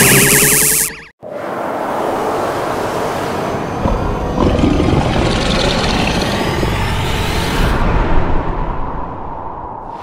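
A loud, wavering energy-beam blast sound effect cuts off abruptly about a second in. After it comes dramatic background music over a low rumble.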